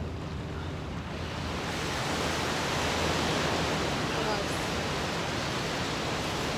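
Steady rushing of surf and wind, swelling about a second and a half in and then holding.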